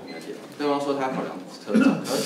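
A man's voice speaking Mandarin.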